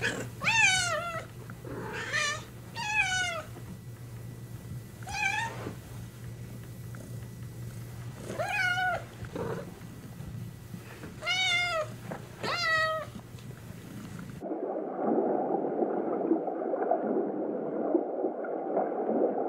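Domestic cat meowing, about eight separate meows that fall in pitch, spread over the first fourteen seconds. About fourteen and a half seconds in, the sound cuts abruptly to a steady gurgling, watery rush.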